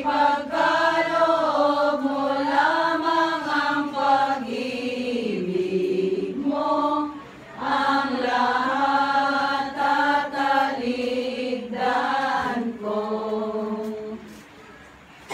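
A group of women singing a hymn together in long held notes, with short breaths between phrases about seven and twelve seconds in.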